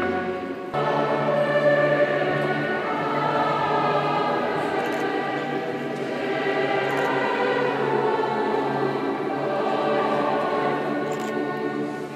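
A choir singing a slow hymn in sustained chords, changing chord about a second in. It is sung while communion is being given out.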